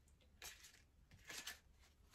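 Near silence, with a few faint, soft rustles and slides of tarot cards being handled, about half a second in and again around a second and a half in.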